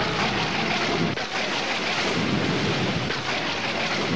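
Recorded sound effect of heavy rain with thunder: a loud, steady roar of noise with no melody, in the intro of a synth-pop remix.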